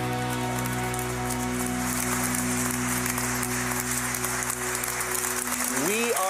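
The last chord of a live song, held and ringing for several seconds before cutting off suddenly near the end, while studio audience applause rises under it.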